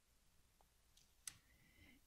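Near silence, broken by a single faint click a little over a second in, followed by a faint, brief high tone.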